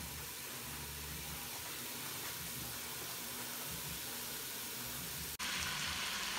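Onion and bell pepper seasoning blend, from frozen, sizzling steadily as it sautés in a stainless steel pot, with a short break near the end.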